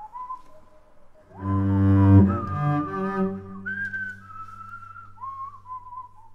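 A slow tune whistled in long held notes, stepping down in pitch. From about a second in, a few loud, deep sustained notes with a rich tone sound for a couple of seconds, then the whistling goes on.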